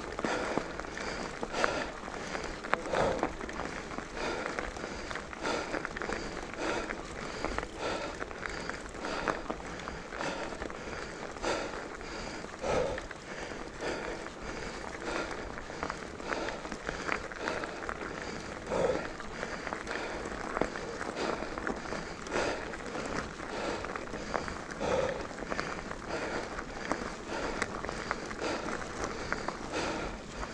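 Specialized Enduro mountain bike riding over a dirt trail strewn with dry leaves: a steady rolling tyre noise with continual irregular crackling, clicks and rattles from the tyres and bike over the bumps.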